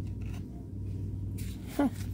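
Steady low background hum with no distinct event, then a short spoken "huh" near the end.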